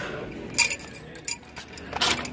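Steel adjustable wrenches clinking against each other and the metal pegboard hooks as they are handled and lifted off the display: a few sharp metallic clinks, the clearest about half a second in and at the end.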